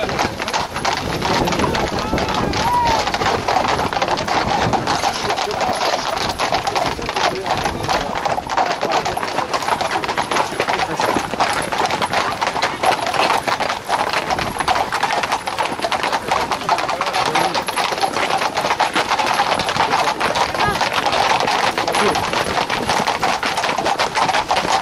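Hooves of a group of Camargue horses clattering fast and densely on an asphalt road, with the voices of a crowd mixed in.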